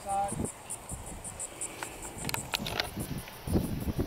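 An insect chirping in a fast, steady train of high pulses, about five a second, that fades away near the end. Under it are wind buffeting on the microphone and a brief voice.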